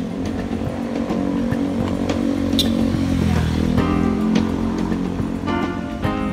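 A motor vehicle's engine running close by in street traffic, its pitch dropping about halfway through, with background music laid over it.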